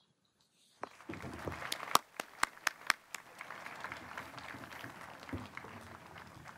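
Scattered applause from a seated crowd, starting about a second in. Individual claps stand out sharply at first, then thin out into a steady, softer patter.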